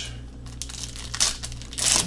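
Plastic trading-card pack wrapper crinkling in short crackles as hands work it and tear it open, loudest near the end.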